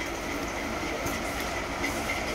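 A steady low background rumble, with faint rustling as a folded embroidered suit piece is handled and laid out.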